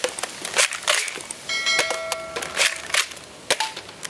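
Toy Winchester Model 1887 lever-action shotgun being worked and fired: a string of sharp clicks and snaps, with a short ringing clang about halfway through.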